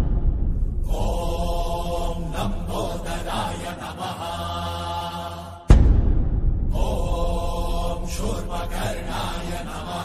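Background devotional chant music: long held sung tones in a slow mantra, with a deep booming stroke that dies away about six seconds in.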